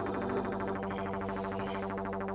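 A steady, low electronic drone held on a few fixed pitches with a fast, even pulse running through it: synthesizer music in the film's score.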